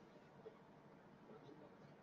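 Near silence: room tone, with one faint tick just under half a second in.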